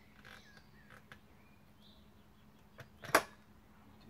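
Quiet handling of a dismantled vintage Homelite chainsaw: a few faint clicks, then one sharp metallic click about three seconds in.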